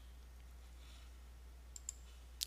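Near silence with a steady low hum, broken by two faint clicks in quick succession near the end.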